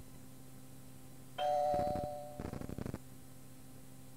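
Cueing chime on an answering-machine outgoing-message cassette: one electronic chime of two tones sounding together about a second and a half in, fading over about a second and ending in a quick fluttering tail. It signals that the next outgoing message starts in three seconds.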